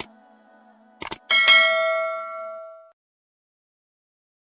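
A few short clicks, then a bright bell-like ding about a second and a half in that rings on and dies away over about a second and a half, over the last of a fading low drone.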